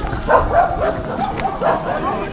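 A dog barking and yipping in a run of short calls, about two a second.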